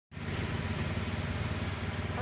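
An engine idling steadily with a low, even rumble.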